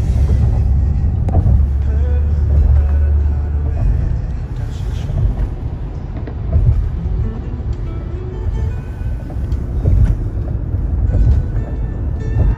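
Low road and engine rumble heard from inside a moving car on a highway, heaviest in the first few seconds, with music playing in the background.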